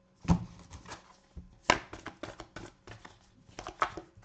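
Tarot cards being handled and laid down on a table: a series of sharp taps and snaps, the loudest about a third of a second in and again just under two seconds in, with a quick run of clicks near the end.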